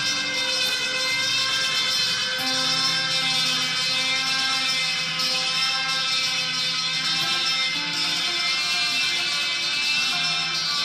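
Electric guitar played through a delay effect, its notes held and overlapping into a sustained wash of layered tones. New notes enter about two and a half seconds in and again near the end.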